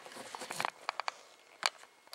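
A quiet room with a handful of short, sharp clicks and taps, the sharpest about one and a half seconds in.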